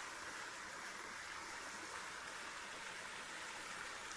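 Mountain forest stream running over rocks: a steady, even rush of water.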